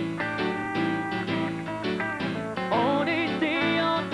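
Live country band playing: electric and acoustic guitars with keyboard and bass, and a man's singing voice coming in about three seconds in.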